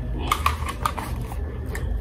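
Over-ear headphones being lifted off the head and lowered onto the neck: a few light clicks and rustles from the plastic headband and ear cups, over a low steady hum.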